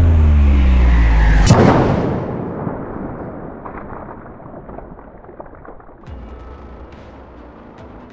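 Intro music sting: loud low tones sliding downward in pitch into a single booming hit about a second and a half in, which then dies away slowly over the next several seconds with faint crackles in the tail.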